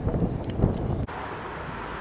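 Outdoor street background noise: a low rumble that breaks off abruptly about a second in, giving way to a steadier, fainter hiss.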